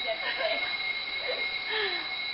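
Building fire alarm sounding, a steady high-pitched tone held at two pitches without a break, with faint voices under it.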